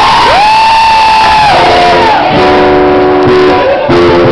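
An audience member cheering after a joke at a live acoustic show: a long whoop that glides up and holds its pitch for over a second, then a second, lower held call.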